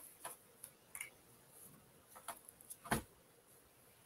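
Faint, irregular clicks at a computer, about six over the few seconds, the loudest about three seconds in, as slides are being opened for screen sharing.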